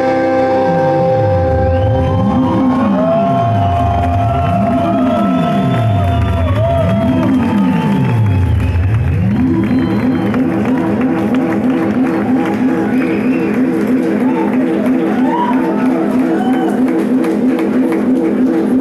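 Live band music led by a synthesizer. A low synth tone sweeps down and back up in pitch three times, each sweep about two and a half seconds, under held keyboard notes and gliding high tones. From about nine seconds in it gives way to a fast pulsing repeated synth pattern.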